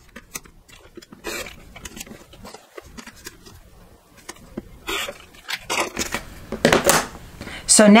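A rotary cutter run along an acrylic ruler, slicing sewn quilt fabric apart on a cutting mat, in a few short rasping strokes about five to seven seconds in, the loudest near the end. Light clicks and taps of the ruler and fabric being handled come before the cut.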